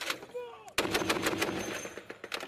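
Vehicle-mounted, belt-fed heavy machine gun firing a sustained burst, with rapid, evenly spaced shots that start about three-quarters of a second in.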